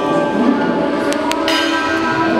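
Cymbals ringing with many steady, overlapping metallic tones, with a few short high clicks or scrapes a little past the middle.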